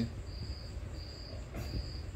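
A cricket chirping: short, high chirps repeating about every two-thirds of a second, three in these two seconds.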